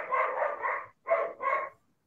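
A dog barking in a quick run of barks, which stops shortly before the end.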